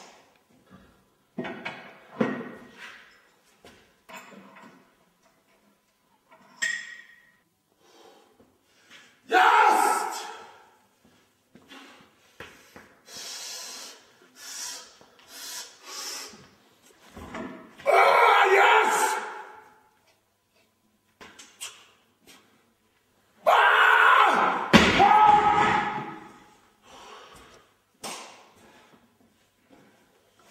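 A strongman's loud shouts and grunts of effort while straining at a 175 kg barbell lift, in three long bursts, with a heavy thud late on.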